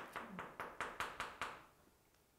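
Chalk tapping on a blackboard as a word is written in quick strokes: a run of faint, sharp taps, about five or six a second, stopping about one and a half seconds in.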